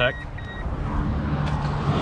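Two short, faint electronic beeps near the start, then rustling and scuffing as a person climbs out of a pickup's cab onto concrete, over a steady low hum.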